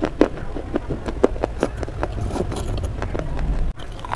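Close-miked crunching of a slate clay bar being bitten and chewed: a quick, irregular run of sharp cracks and crunches, broken by a brief cut just before the end.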